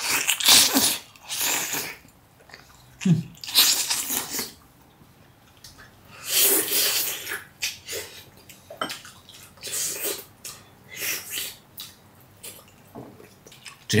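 Close-miked eating: loud sucking and slurping bursts as a person gnaws meat and gelatinous skin off a boiled pig's trotter held in the hands, coming every second or two with quiet chewing gaps between.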